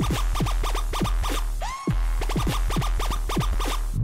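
DJ scratching a vinyl record on a turntable over a dance track with a steady deep bass: a rapid run of short scratches, several a second, each sweeping down in pitch. Just before two seconds in, a rising glide and the bass drops out for a moment, then the scratches go on.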